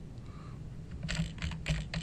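Computer keyboard being typed on: a quick run of keystrokes starting about a second in, after a quiet first second.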